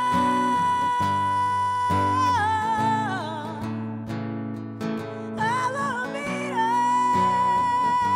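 Solo woman's singing voice with her own Epiphone acoustic guitar playing chords underneath. She holds a long high note that slides down after about two seconds, dips quieter in the middle, then holds a second long note near the end.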